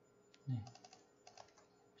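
Faint clicking of computer keys in two quick runs, the first about half a second in and the second past the middle, as a file is copied and pasted.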